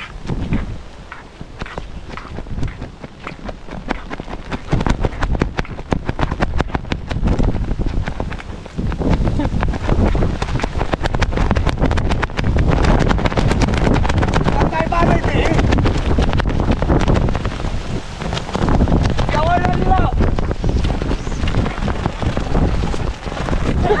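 Strong, gusty storm wind buffeting the microphone, louder from about nine seconds in.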